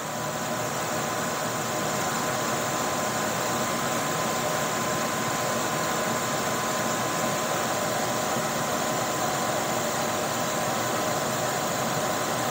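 An electric fan motor running just after being switched on: a steady rushing air noise with a steady high whine, growing slightly louder over the first couple of seconds and then holding level.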